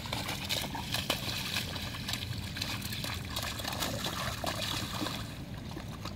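A large dog splashing and thrashing in a shallow rainwater puddle, with water sloshing and splattering, settling down about five seconds in.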